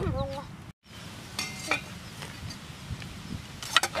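A few light clicks and knocks of utensils being handled: steel bowls and a stone mortar and pestle. A voice trails off at the start and the sound cuts out for a moment just before a second in.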